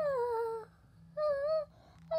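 A woman singing a wordless melody unaccompanied: a first phrase that slides down in pitch, a short pause, then a second short phrase about a second in.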